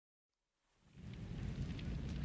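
Silence for about the first second, then a rushing, rain-like noise with a deep rumble like distant thunder fades in and slowly grows: an ambient opening at the start of a reggae track.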